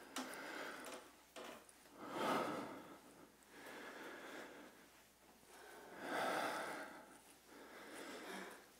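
Heavy breathing: long, noisy breaths about every two seconds as a person recovers from exertion during a rest between sets of handstand jumps.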